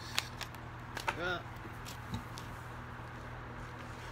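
A few sharp snaps of a tarot deck being shuffled in the hands in the first second, then only a steady low background hum.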